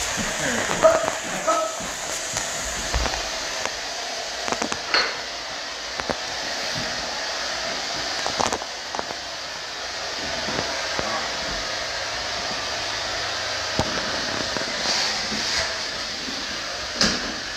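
Single-disc rotary floor buffer fitted with a tampico brush, running steadily on a hardwood floor, with a few sharp knocks; the clearest comes about a second in and others near five and eight seconds.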